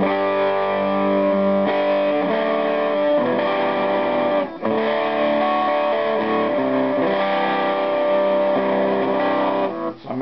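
Electric guitar played through a PNP germanium fuzz pedal into an amplifier, the pedal switched on: sustained distorted chords that change every second or two, with a brief break about four and a half seconds in.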